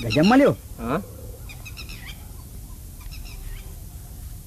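A man's short wordless vocal sound, a groan that rises and falls in pitch, with a shorter one about a second in. Small birds chirp faintly a few times in the background.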